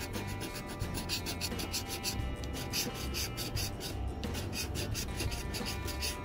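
A round plastic scratcher token scraping the latex coating off a paper scratch-off lottery ticket in rapid back-and-forth strokes, over background music.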